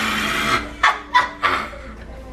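A man's loud, rasping yell as he reacts to a shot of spirits he has just downed, followed by a few short shouts and laughs.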